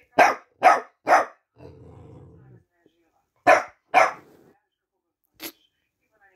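Staffordshire bull terrier puppy barking: three quick barks, a low growl lasting about a second, then two more barks and a fainter single yap near the end.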